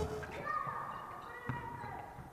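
Live sound of a basketball game in a gym hall: players' voices calling out faintly, and one sharp thud of the ball bouncing on the court about a second and a half in.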